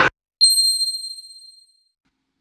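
A single high chime, a ding struck once about half a second in and ringing out, fading away over about a second and a half.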